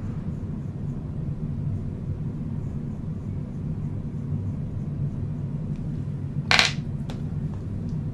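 A single sharp clink of a small hard object about six and a half seconds in, followed by a fainter click, over a steady low room hum.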